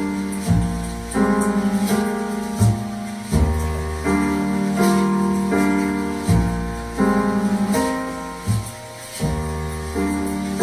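Jazz with piano chords over deep bass notes, played from a phone over Bluetooth through a homemade active speaker with a subwoofer. The chords change about every second or so.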